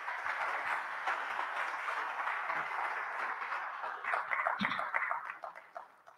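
Audience applauding after a talk: steady clapping that thins into scattered claps and dies away near the end.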